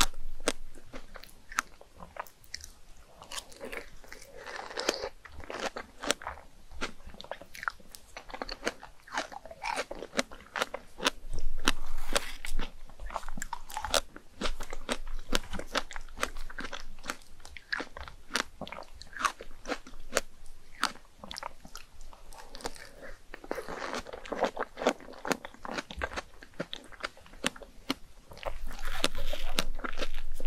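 Close-miked biting and chewing of fresh strawberries coated in chocolate whipped cream: a dense run of wet mouth clicks and squelches, with a few louder bites.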